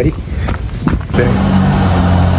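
Outdoor noise with wind on the microphone, then, after a cut about a second in, a car engine idling steadily with a low, even hum, most likely the white Toyota Corolla in the foreground.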